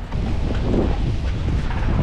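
Blizzard wind buffeting the microphone: a loud low rumble.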